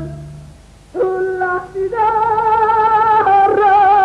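A woman's ranchera singing voice, nearly unaccompanied. After the band's previous chord fades out in the first second, she comes in and rises to a long, high held note with a wide vibrato.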